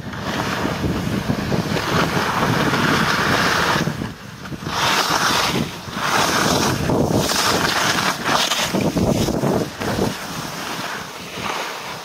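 Skis scraping and hissing through soft spring snow while carving down a mogul run, with wind rushing over the microphone. The noise comes in several surges broken by short lulls, one per turn, and dies down near the end as the skier slows.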